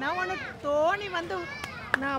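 Speech only: a raised, high-pitched voice talking excitedly, with two sharp clicks near the end.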